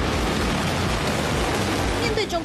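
Ballistic missile launch: the rocket motor firing, a loud, steady rushing noise with a deep rumble underneath.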